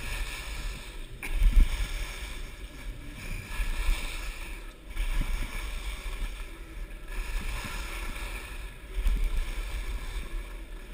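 Skis sliding and scraping over groomed snow while skiing downhill, a steady hiss that rises and falls, over low rumbles from air and vibration on the moving helmet- or body-mounted camera, loudest about a second and a half in.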